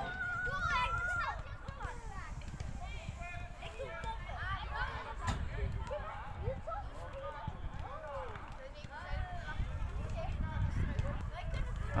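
Children's voices calling and shouting across a football pitch, too distant to make out, over a steady low rumble, with a ball kicked sharply about five seconds in.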